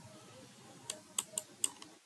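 Computer keyboard keystrokes as text is typed and edited: about five light key clicks in quick succession in the second half.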